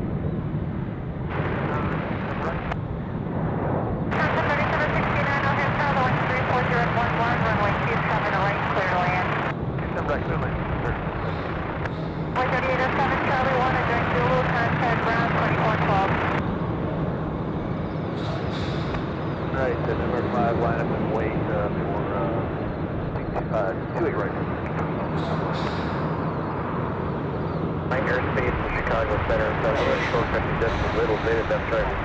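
Air traffic control radio voices, muffled and unintelligible, over a steady low hum.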